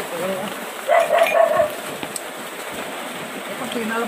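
Short stretches of voices in conversation over a steady background hiss.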